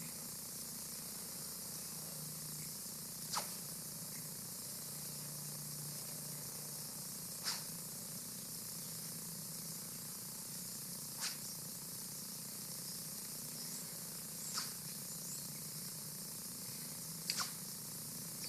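Five faint, brief swishes a few seconds apart over a steady hiss: a sharp longsword swung through practice cuts with the blade turned in the grip so the edge is out of line, which makes almost no sword wind.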